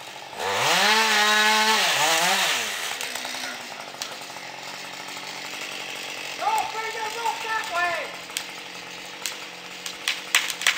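Gas chainsaw cutting into the trunk of a large sugar maple during felling. It is revved hard for about two seconds near the start, its pitch rising, holding high, then falling back, and it keeps running more quietly afterwards.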